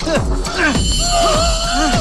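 Film soundtrack: loud vocal cries that sweep up and down in pitch, with one held note in the second half, over dramatic background music.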